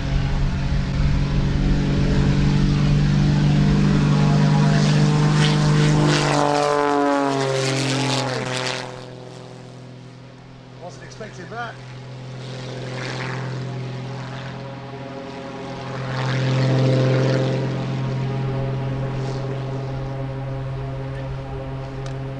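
Pitts Special S2S aerobatic biplane's piston engine and propeller at full power on the take-off run. About seven seconds in its pitch falls steeply and the sound fades, then it swells again around sixteen seconds before settling into a steady drone.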